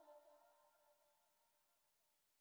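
Near silence, with the ringing tail of a song's final note fading out in the first moment.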